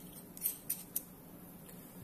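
Three faint, sharp clicks in quick succession in the first half, from the parts of a Raspberry Pi High Quality Camera's lens mount being handled and fitted back by hand.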